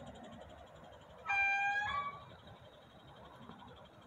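A vehicle horn honks once, briefly, just over a second in: a single steady pitched note under a second long, ending with a short higher note.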